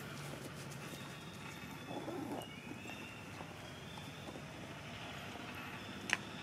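Outdoor ambient noise, steady throughout, with a short louder sound about two seconds in.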